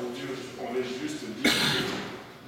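Low talking from people in the room, then a single cough about one and a half seconds in, the loudest sound.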